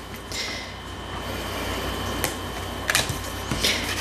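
Tarot cards being handled and slid on a wooden table: a soft rustle with a few light clicks and taps about two and three seconds in, over a low steady hum.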